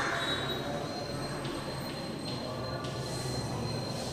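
Chalk scratching on a blackboard as a number and division lines are written, over steady classroom background noise.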